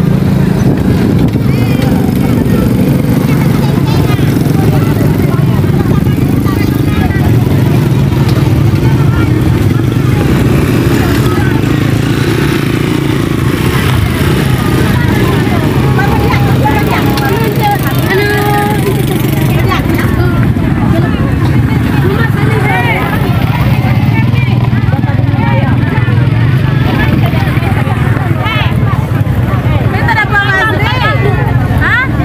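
Motorcycle engines running steadily as riders pass, with people's voices talking over them.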